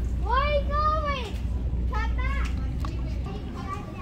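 A high-pitched voice making drawn-out, wordless calls that rise and fall in pitch, the loudest in the first second or so, then shorter calls. A steady low hum runs underneath.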